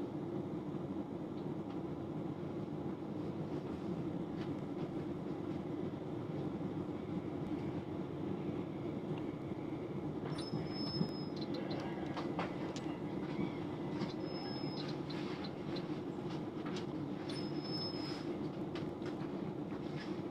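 Class 357 Electrostar electric train running steadily, heard from inside the carriage: a steady rumble with scattered clicks from the rail joints. In the second half come three brief high-pitched wheel squeals, each under a second long.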